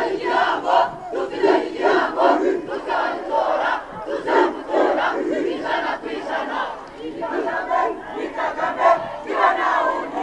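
A large rally crowd cheering and shouting, many voices at once, swelling and falling in irregular surges.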